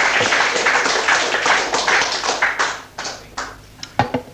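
Audience applause: dense clapping that thins out after about three seconds to a few scattered claps and then stops.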